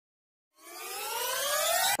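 Rising sweep sound effect under a channel logo intro. It starts about half a second in, with several tones gliding upward together over a hiss, grows louder, and cuts off suddenly at the end.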